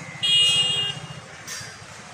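A vehicle horn toots once, a short high tone lasting under a second, over the low rumble of road traffic.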